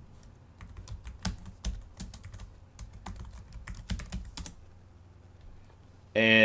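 Computer keyboard typing a short terminal command: an uneven run of key clicks that starts shortly in and stops about four and a half seconds in.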